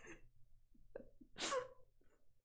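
A woman's short, breathy burst of laughter about a second and a half in, with a smaller puff of breath just before it.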